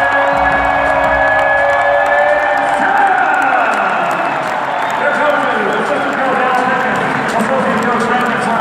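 Basketball arena crowd cheering and shouting during pregame player introductions, with a long held tone over it for the first three seconds or so.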